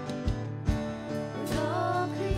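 A live church worship band playing a slow praise song, with a singing voice coming in about one and a half seconds in.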